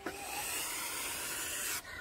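Mother goose hissing, one long hiss that cuts off near the end. It is an angry, defensive warning at someone too close to her nest.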